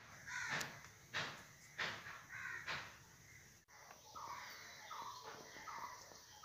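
Faint harsh bird calls: several in the first three seconds, then a regular run of shorter calls a little more than once a second.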